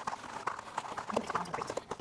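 Paper towel rubbing and rustling inside a damp plastic bento box as it is wiped dry, with a run of small irregular clicks and knocks from the plastic box.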